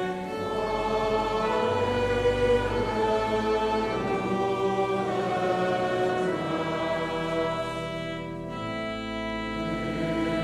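A church congregation singing a psalm slowly in long, held notes, with pipe organ accompaniment.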